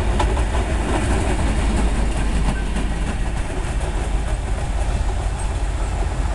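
EMD G22CU diesel-electric locomotive running light past at close range. Its engine rumbles steadily, and the wheels click on the rails in the first second.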